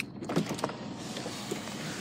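The Peugeot 108 Top's electric retractable fabric roof being operated from its overhead button, its motor running steadily with a few clicks in the first second.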